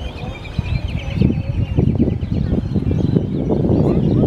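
Small birds chirping, with a quick trill about a second in, over a low, gusting rumble of wind on the microphone that grows louder from about half a second in and is the loudest sound.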